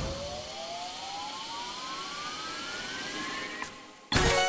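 NetEnt Stickers video slot's spinning-reel suspense effect on a sticky re-spin: one tone climbing steadily in pitch for about three and a half seconds over a hiss, cut off by a click near the end.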